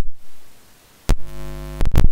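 Sharp electrical clicks around a near-silent gap, then a steady buzzing hum for just under a second, ended by another click: a glitch in the audio or microphone chain.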